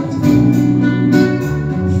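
A slow ballad with guitar accompaniment, with a man singing long held notes into a microphone.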